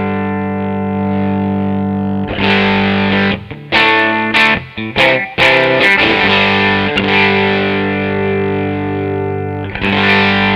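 Telecaster electric guitar played through a 1961 Fender brownface Deluxe amp: a held chord ringing out, then a run of short choppy chord stabs a few seconds in, then another long sustained chord.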